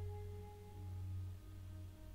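Soft ambient meditation music: a few sustained ringing tones, one fading out and another coming in about two thirds of the way through, over a low droning hum that swells and fades.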